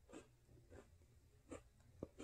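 Faint chewing of a chocolate chip cookie: three soft crunches, spaced a little under a second apart.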